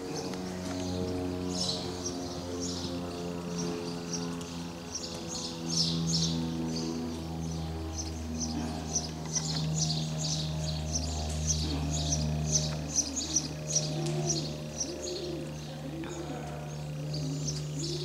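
Small birds chirping over and over throughout, over low, steady held tones that shift pitch every second or two.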